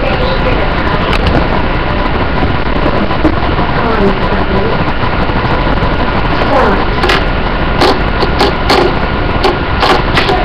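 Loud, steady hiss and rumble with faint voices under it, and a run of sharp clicks in the second half as small magnets are snapped one after another onto a red plastic disc.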